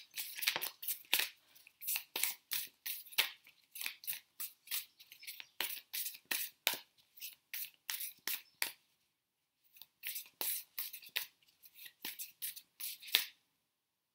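A small bird chirping rapidly and repeatedly, about three short sharp chirps a second, with a brief pause partway through, stopping near the end.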